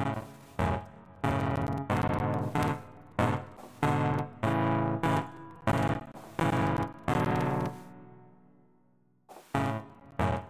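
Electric piano chords from a keyboard jam playing back, struck in a steady rhythm with each chord decaying. Near the end one chord rings out for about two seconds before the playing starts again.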